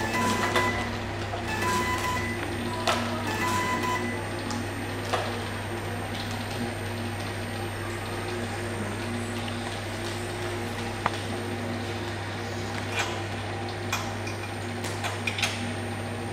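Card printing and labelling machine running: a steady motor and conveyor hum, with a repeated beep that stops about four seconds in and scattered sharp clicks from the label applicator and cards.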